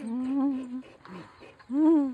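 Drawn-out cooing voice sounds: one long, slightly wavering 'ooh' tone, then near the end a short call that rises and falls in pitch, the loudest moment.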